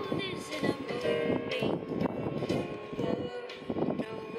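A man's voice talking over background music.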